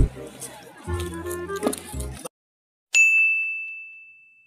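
A single bright ding, a sound effect struck about three seconds in: one high tone that rings on and fades slowly. Before it, a short stretch of background music that cuts off, then a moment of silence.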